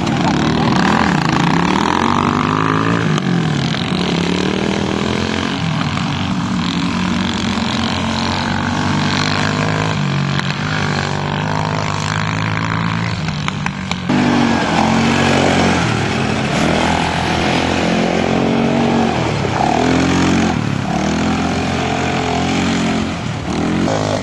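Quad bike engines running hard on a dirt track, their pitch rising and falling over and over as the riders accelerate and back off. The sound changes abruptly about halfway through.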